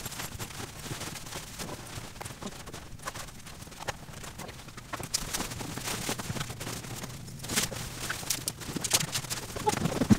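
Sped-up packing sounds: clothes and gear rustling, with a quick, irregular run of knocks and clicks as items are stuffed into backpacks, getting busier and louder in the last few seconds.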